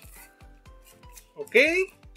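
Plastic-wrapped plastic container handled in the hands, its wrapping rubbing and rustling faintly, over soft background music with a steady beat. A man says "ok" near the end.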